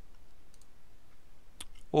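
A computer mouse clicking, with one sharp click about one and a half seconds in and a few faint ticks before it, over quiet room background.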